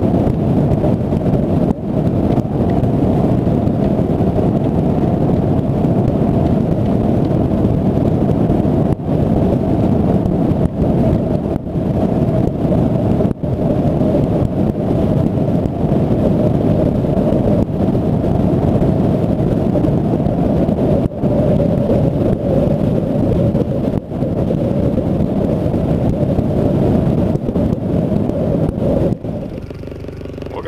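A skiff's outboard motor running steadily at speed with heavy wind buffeting the microphone.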